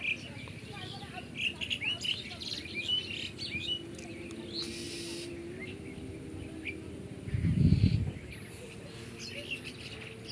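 Small birds chirping and twittering in quick short calls, busiest in the first few seconds. A loud low rumble near eight seconds, lasting under a second, is the loudest sound.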